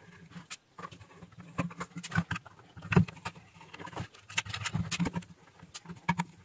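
Irregular clicks and light metallic taps from handling a switch-mode power supply's sheet-metal cover and a screwdriver, with a louder knock about three seconds in.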